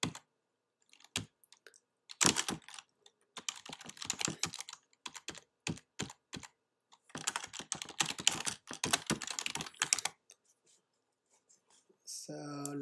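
Typing on a computer keyboard: several short bursts of quick keystrokes with brief pauses between, stopping about two seconds before the end.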